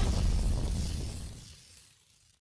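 Sound effect of an animated logo outro: a low, noisy sweep that fades away over about a second and a half to near silence.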